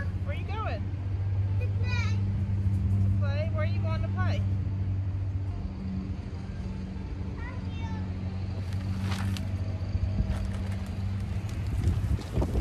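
A steady low engine-like hum runs throughout. Short high-pitched calls come in the first four seconds and again around eight seconds. A plastic bag of potting mix crinkles in short bursts around nine seconds.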